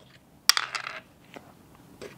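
Small plastic dice clattering in a wooden dice tray: one sharp click about half a second in, then a brief rattle, and a faint click later. The dice are being picked out and rolled again for a reroll.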